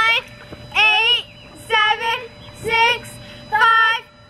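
Girls' voices chanting a count aloud in a sing-song, one drawn-out number about every second.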